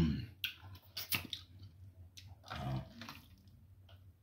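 Wet eating sounds of a man gnawing and chewing meat off a cooked animal's jawbone, with a few sharp clicks and smacks in the first second and a short vocal sound near the three-quarter mark.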